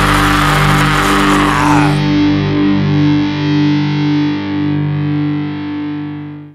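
Hardcore punk band playing loudly, then cutting off about two seconds in and leaving the final distorted electric guitar chord of the song ringing with a wavering sustain. The chord slowly fades out.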